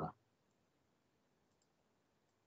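Near silence: room tone with a couple of faint computer mouse clicks.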